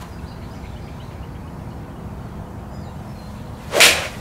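Golf iron striking a ball off a hitting mat: one sharp, loud crack near the end, over a steady low background rumble. The shot is struck well and flies straight.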